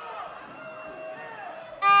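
Faint voices in the arena, then, about two seconds in, a loud, steady horn tone starts suddenly: the signal for the end of the round.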